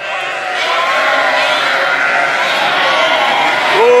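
A flock of sheep bleating all at once, many overlapping calls merging into a loud, steady din, as lambs rush out to the ewes and mothers and young call to find each other. A man's long drawn-out "oo" comes in near the end.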